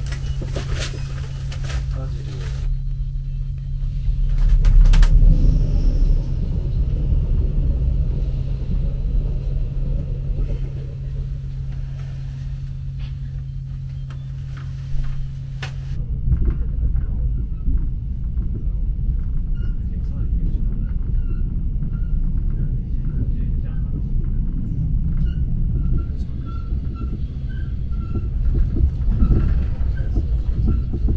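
Inside a Mugunghwa passenger car: a steady low hum fills the car, then about halfway through it gives way to the heavier rumble of the train running along the track.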